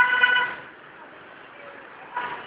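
A single short vehicle horn beep, a flat steady tone that stops about half a second in, then steady background traffic noise.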